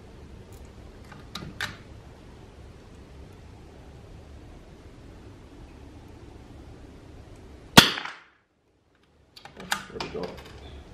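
A single .22 rimfire rifle shot about eight seconds in, sharp and by far the loudest sound. A few light clicks come before it and again just after it.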